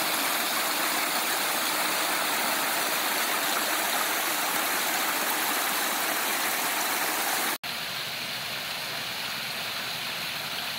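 Water tumbling and splashing over limestone rocks in a pond waterfall, a steady rush that aerates the water. About seven and a half seconds in it cuts off abruptly and resumes quieter, as from further away.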